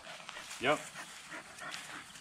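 A cat's single short meow, quiet against the surrounding talk, about half a second in.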